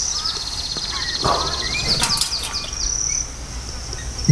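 Insects trilling in a high, rapidly pulsing buzz, with a few short bird chirps over it and a light click about two seconds in.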